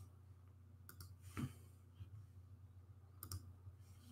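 Near silence: a steady low hum with a few faint clicks, about a second in and again near the end.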